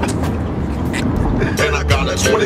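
Steady low road rumble inside a moving car's cabin, with a man laughing at the start.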